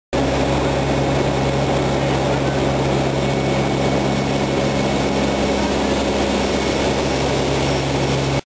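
Steady, loud drone of a C-130 Hercules turboprop transport heard from inside its cargo hold: a dense roar with a constant low hum running under it.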